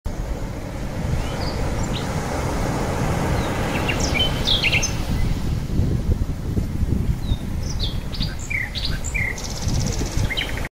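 Birds chirping in short, scattered calls, a cluster about four seconds in and more near the end, over a steady low rushing noise.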